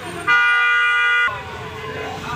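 A vehicle horn gives one loud, steady honk lasting about a second, starting a moment in, over the low noise of street traffic.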